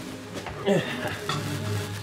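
A lit sparkler on a cupcake sizzling as it burns, over soft background music with held low notes.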